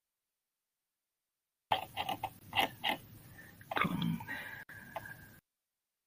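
Dead silence for nearly two seconds, then a few faint clicks and a brief low voice sound, like a murmur, close to the microphone.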